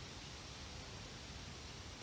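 Faint steady hiss of background noise with no distinct sound event: outdoor ambience between words.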